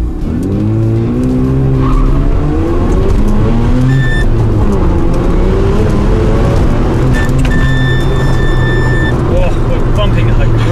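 Mazda RX-7 FD's twin-turbo rotary engine pulling hard under load, heard from inside the cabin, its pitch climbing, easing off about four seconds in, then rising again. Tyres squeal briefly about four seconds in and again for nearly two seconds near the end as the car drifts into oversteer mid-corner.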